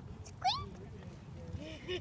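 A child's short, high-pitched vocal squeak, a single rising glide about half a second in, voicing a character in a spoken story.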